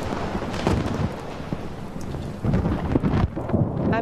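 Thunder rumbling over the steady hiss of rain, with heavier rumbles about half a second in and again about two and a half seconds in.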